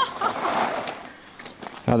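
Mountain bike tyres skidding over dry, loose dirt as the rider brakes hard to a stop, a hiss lasting about a second before it fades.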